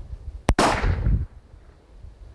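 A single gunshot about half a second in, a sharp crack with a short echo that fades within about half a second, as a test round is fired into a block of ballistic gelatin.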